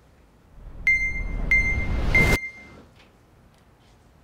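Edited-in electronic sound effect: three short high beeps, evenly spaced, over a rising swell of noise that builds and then cuts off suddenly, a suspense cue before a quiz answer is revealed.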